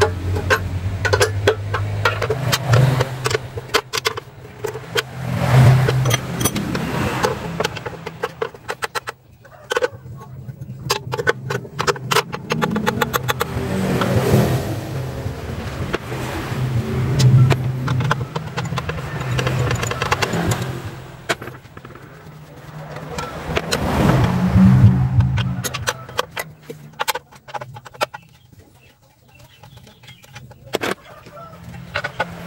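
Repeated metal clicks and clinks of a hand wrench working the bolts of a Suzuki Carry's timing belt cover. Under them, the hum of passing vehicles swells and fades several times.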